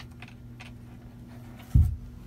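Cardboard box flaps being handled, with a few light taps and clicks over a steady low hum, then one heavy low thump near the end.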